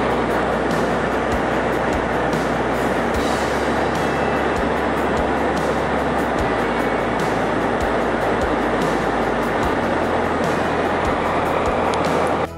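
Background music with a steady beat and changing bass notes, laid over a continuous rushing drone of a jet airliner's cabin at cruise.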